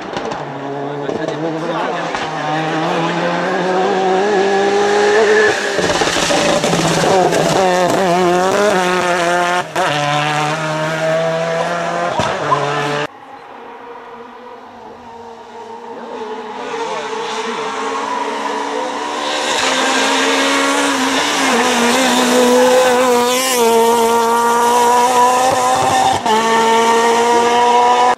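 Rally car engine at high revs through a corner: the note climbs, breaks up briefly with the gear changes and holds, then cuts off suddenly about thirteen seconds in. After that a second rally car's engine is heard approaching, its note rising steadily, wavering once and climbing again until it cuts off at the end.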